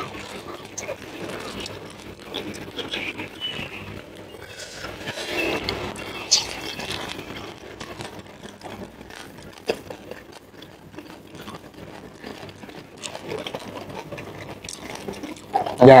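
Close-miked eating and food-handling sounds: kitchen scissors snipping raw red tilapia, vegetables being handled and mouth noises, with many small clicks and a louder burst near the end.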